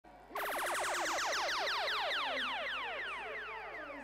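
Electronic zap sound effect: a fast run of steeply falling pitch sweeps that starts suddenly, then slows and fades away.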